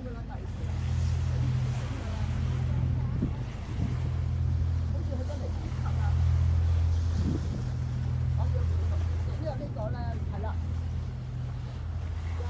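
A low, steady engine drone that swells and eases in loudness, with faint voices of people talking in the background.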